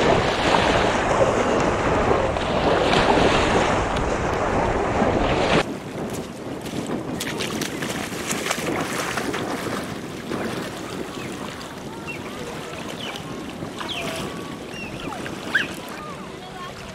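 Wind on the microphone over small waves washing onto the shore, cutting off abruptly about five and a half seconds in. Then quieter water lapping and splashing around a person wading, with a few faint high chirps near the end.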